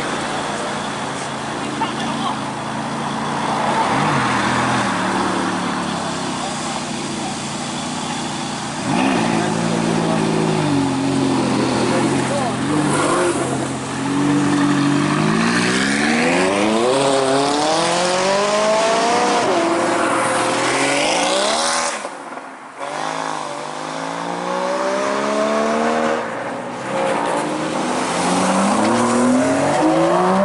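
McLaren 570S's twin-turbo V8 revving and accelerating away hard, its pitch climbing and falling back several times as it shifts up through the gears, over crowd chatter. After a brief drop-out near the middle, another sports car's engine climbs through its revs the same way.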